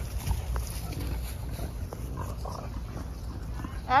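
Dogs play-wrestling, with a few faint, short vocal sounds from them over a steady low rumble.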